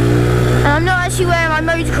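Quad bike engine running steadily while riding, its note rising slightly over the first half second. A man's voice talks over it from just after half a second in.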